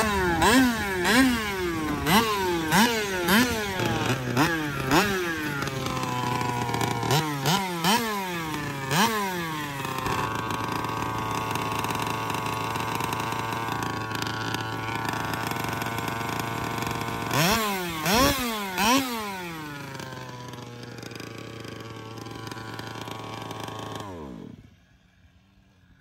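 The HPI Baja 5T's 30.5cc full-mod Zenoah two-stroke engine with a DDM Dominator pipe, blipped again and again so the pitch sweeps up and falls back, with steady idling in between, and falling silent shortly before the end. The clutch engages but no drive reaches the wheels, which the owner puts down to a broken pinion or possibly the slipper clutch.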